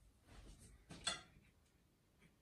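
Mostly quiet, with one short sharp click about a second in and faint handling noise around it.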